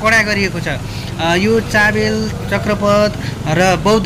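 A man talking over the low, steady running of idling motorcycle engines and street traffic.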